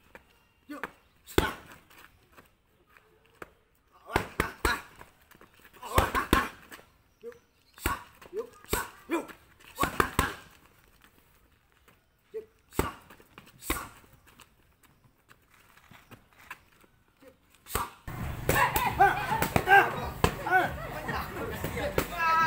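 Boxing gloves striking focus mitts: sharp slaps, singly or in quick combinations of two to four, with pauses between. About 18 seconds in, a louder, busier stretch with voices takes over.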